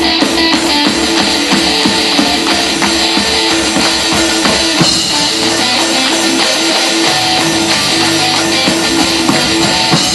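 Live rock band playing: electric guitar and drum kit, loud and unbroken.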